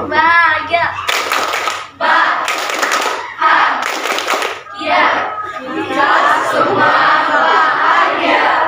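A class of students clapping their hands together in several loud bursts of about a second each. A single voice leads off at the start, and from about halfway through many voices call out together over the clapping.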